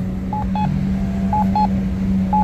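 Campbell Guardian accessible pedestrian signal push button sounding its locator tone: a short double beep about once a second, twice in this stretch. Under it runs a steady low hum.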